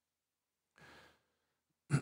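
Near silence broken by a man's breathing into a close microphone: a faint breath about a second in, then a short, louder breath just before the end.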